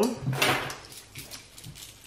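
Loose coins clinking and jingling as they are scooped up by hand from a clear plastic pouch, loudest about half a second in, then a few lighter clinks.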